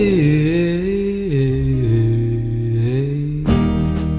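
Song intro: a wordless vocal line is held and slides down between a few long notes over a low sustained tone. Strummed guitar chords come in about three and a half seconds in.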